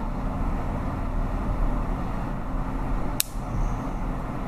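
Steady low background rumble, with a single sharp click about three seconds in.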